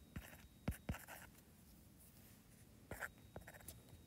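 Stylus tapping and stroking on a tablet's glass screen while letters are written by hand: a few faint, short taps, grouped in the first second and again about three seconds in.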